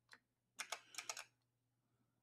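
Faint computer keyboard keystrokes: a single click, then a quick run of about six keys pressed in the middle.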